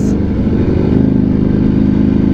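Ducati Panigale V4's 1100 cc V4 engine running through an Arrow exhaust, holding steady at light throttle in second gear at low road speed.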